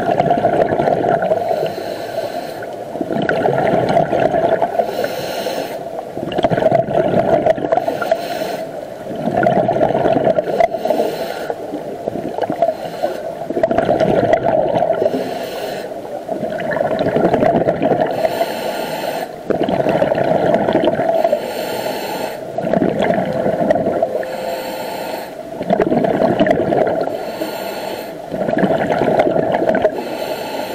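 Scuba diver breathing through a regulator underwater: a short hiss on each inhale and a longer burst of bubbling on each exhale, about one breath every three to four seconds.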